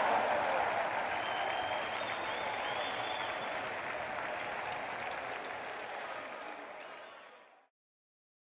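Ice hockey crowd applauding in the arena, dying away over the last seconds and cutting off abruptly just before the end.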